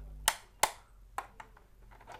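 Sharp clicks from a wall switchboard as a plug-in lamp is switched on: two clear clicks close together in the first second, then a few fainter ticks.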